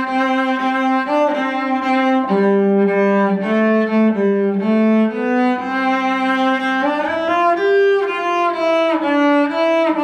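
Solo cello bowed, playing a carol melody in a string of sustained notes, with a sliding change of pitch about seven seconds in.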